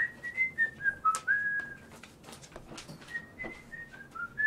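A person whistling a short tune in clear single notes that step up and down, then starting the same phrase again near the end. A few sharp clicks and knocks fall between the notes.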